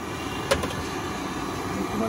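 Steady hum of a busy street around a food stall, with one sharp click about half a second in.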